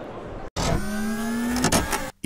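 Faint background hum, then after an abrupt cut a short electronic logo sound effect: a steady low tone with a slowly rising whine above it, lasting just over a second.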